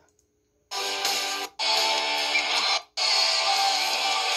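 Acoustic steel-string guitar playing a fast lead solo along with a recorded backing track of the song. The music starts under a second in and cuts out sharply twice for a moment.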